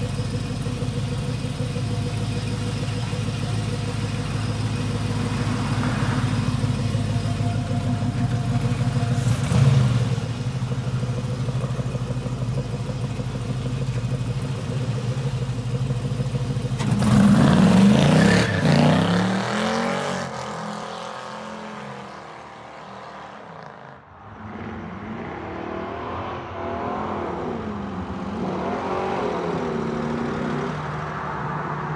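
LS-swapped 6.0 V8 in a 1988 Monte Carlo idling steadily, with a short blip of the throttle near ten seconds in. At about seventeen seconds it revs loudly as the car pulls away. The engine then fades and comes back with rising and falling pitch as it drives off.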